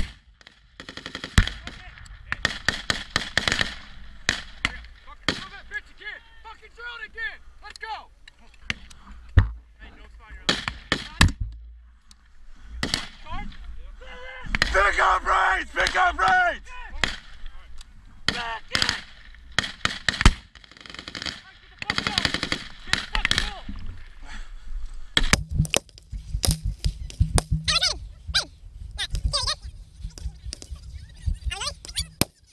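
Small-arms fire: single rifle shots and machine-gun bursts at irregular intervals, with quick strings of shots near the end, and men shouting between the volleys.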